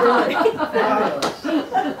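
People talking and chuckling over one another in a room, with one sharp knock a little over a second in.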